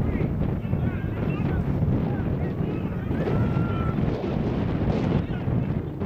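Wind buffeting the microphone in a steady low rush, with faint, distant shouts of players and onlookers across the field over it.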